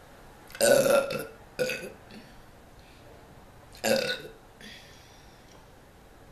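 A woman burping loudly three times: a long burp just over half a second in, a short one right after it, and another about four seconds in.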